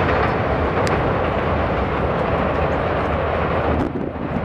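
Loud, steady rumbling noise, heaviest in the low end with a hiss above it. It dips briefly near the end.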